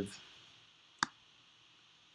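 A single sharp click about a second in, in a quiet pause over a faint steady hiss.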